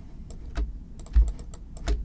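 Computer keyboard and mouse clicking: an irregular string of sharp clicks, with three duller knocks from the desk spread through the two seconds.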